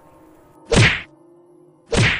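Two sharp whip-lash strikes, about a second apart, each a quick swish ending in a crack.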